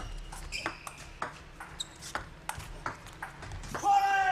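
Table tennis rally: the celluloid ball knocks off rackets and the table in an irregular run of sharp clicks, about two or three a second. A few brief high squeaks, from shoes on the court floor, come in between.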